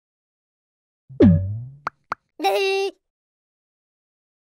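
Cartoon logo sound effects: a falling bloop about a second in, two quick pops, then a short, pitched cartoon-character voice call lasting about half a second.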